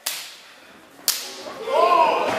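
Two sharp slaps of open-hand chops on a wrestler's bare chest, about a second apart, with the crowd crying out near the end.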